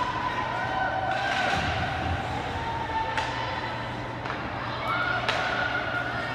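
Ice hockey play echoing in an indoor rink: sharp clacks of sticks and puck a few times, over held pitched sounds and a steady low hum of the hall.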